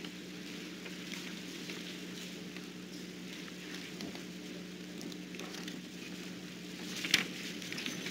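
Quiet room tone of a hall, with a steady low electrical hum and faint noise, and a few small soft sounds about seven seconds in.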